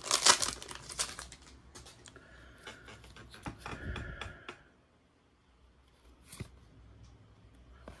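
Crinkling and tearing of a trading-card pack's plastic wrapper at first, then soft clicks and slides of the cards being handled and flipped.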